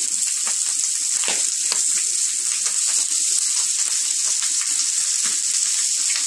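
Slices of boiled pork cheek frying in their own fat on an electric griddle with no oil, a steady sizzle broken by frequent small crackles and spits of fat.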